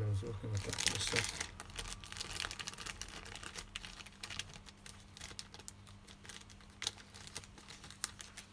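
Thin clear plastic packaging crinkling as it is handled and opened to take out a replacement phone screen: dense crackling for the first couple of seconds, then lighter, scattered rustles.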